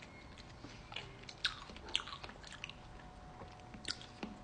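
Mouth-eating sounds from biting and chewing a red chunk of fruit on a stick, with a few short crunches about a second in, around two seconds, and near the end.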